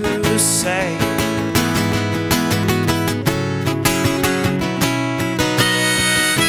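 Acoustic guitar strummed in a steady rhythm, with a rack-held harmonica playing along. A long, steady harmonica note comes in near the end.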